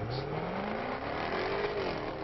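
Jaguar F-Type Coupé engine accelerating hard, its pitch rising steadily through the revs, then easing off slightly near the end.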